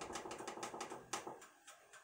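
Timer button on a GE gas range's control panel pressed over and over: a rapid run of light clicks, several a second, that stops after about a second and a half.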